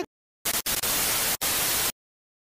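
A burst of static hiss lasting about a second and a half, broken twice by very brief dropouts, with dead silence before and after it.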